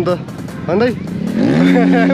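Dirt bike engine revving up about one and a half seconds in and holding at a steady pitch, under talking voices.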